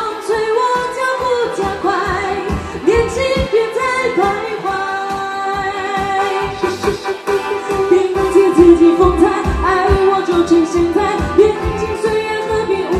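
A female lead singer singing a pop song live into a handheld microphone over backing music with a steady beat.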